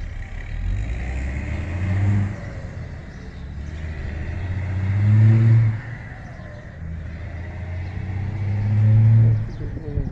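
Honda CG 150 Fan motorcycle's single-cylinder four-stroke engine accelerating, its revs climbing and then dropping sharply three times, about two, five and a half and nine seconds in, as it shifts up through the gears.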